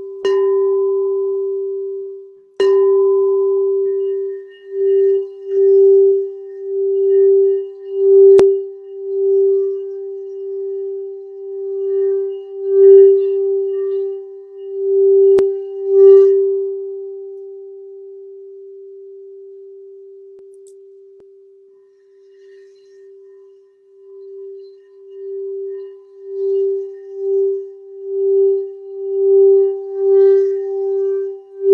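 Throat chakra singing bowl sounding one steady tone. It starts with two sharp strikes, then is sung by circling a mallet around the rim, so the tone swells and pulses in waves. It fades away about two-thirds through and builds up again near the end.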